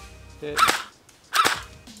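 Well D98 Thompson M1A1 airsoft electric gun firing single shots in semi-auto, two sharp cracks about 0.8 s apart.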